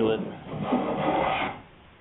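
A block plane drawn along the edge of a wooden sailboat rail in one stroke of about a second and a quarter, shaving off a thin curl of wood to trim the rail's width and bevel to fit.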